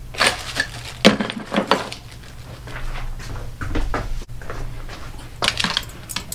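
Metal clanks and knocks as an RCBS Green Machine reloading press is lifted off a workbench, its loose parts rattling. Softer handling bumps follow, then a few more knocks near the end.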